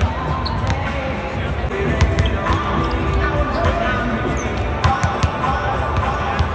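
Basketballs bouncing on a hardwood court: several sharp thuds, one at the start, one about two seconds in and a quick run of three near the end, over music playing on the arena's sound system and voices.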